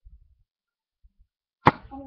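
A single sharp, loud knock or click about three-quarters of the way through, after a stretch with only faint low rumbling.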